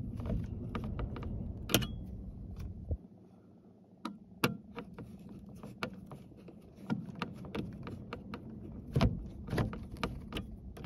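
Irregular small clicks and light scraping of a screwdriver working screws out of a dome light console's metal circuit plate, with a few sharper clicks spread through. A low background rumble stops about three seconds in.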